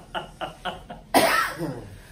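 A man laughing hard: a quick run of short breathy bursts, then one louder, cough-like outburst just after the first second that trails off.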